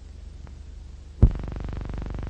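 Steady low hum with a fine, rapid buzz from an old film soundtrack, with a faint click and then a single loud pop about a second in, after which the hum is louder.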